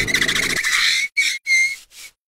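Car tyres screeching: a high squeal over noise for about a second, then two or three short squeals that stop abruptly.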